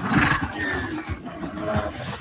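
Movie-trailer soundtrack: a large beast roaring over dense action sound effects.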